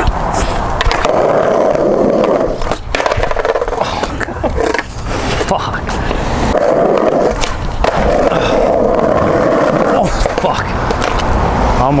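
Skateboard wheels rolling on street pavement with a steady roar, broken by a few sharp clacks of the board against the ground.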